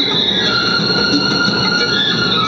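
Karaoke backing track playing an instrumental passage, with several sustained high notes held and slowly shifting over a fuller accompaniment.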